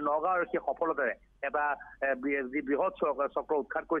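Speech only: a man reporting over a telephone line, his voice thin with the top cut off, talking almost without pause.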